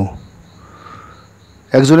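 Faint, high-pitched insect chirring in a steady pulsing pattern, heard in a pause between a man's narration, which resumes near the end.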